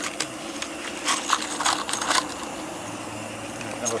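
Live-steam model Ivatt 2-6-2 tank locomotive running along the raised track: a steady hiss of steam with a string of short sharp clicks and chuffs, bunched around the middle.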